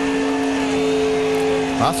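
A steady mechanical hum made of two or three held tones over a noisy background.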